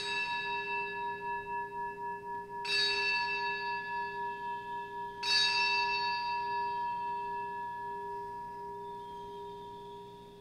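A bell struck three times, about two and a half seconds apart, each stroke ringing on and fading slowly, the last the loudest. It is the consecration bell rung at the elevation of the chalice.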